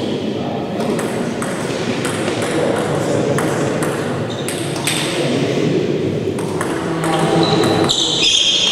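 Table tennis ball bouncing in irregular sharp clicks between points, over a murmur of voices in the hall. Near the end a short high squeak.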